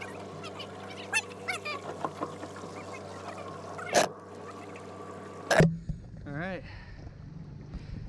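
Mercury 60 hp outboard running at a steady low idle, with a sharp knock about four seconds in and another about a second and a half later. A short voice follows.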